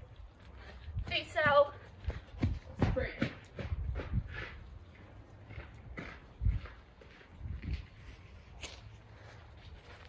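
Running footsteps on a grass lawn: a run of dull thuds as a person sprints and changes pace, spaced about half a second apart in the middle, then a few scattered ones later.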